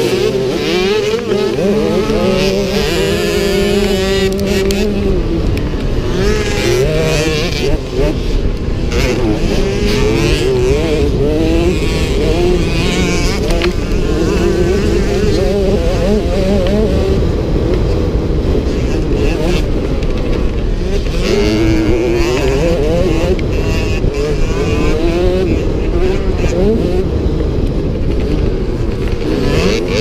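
Small youth motocross bike engine heard on board, revving hard with its pitch rising and falling again and again as the throttle opens and closes through the corners and straights, over a steady rush of wind noise. Other small motocross bikes run close by.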